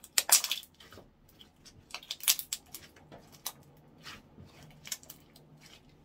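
Slime being squished and handled on a wooden countertop: a series of short, sticky, wet pops and crackles, the loudest just after the start and again about two seconds in.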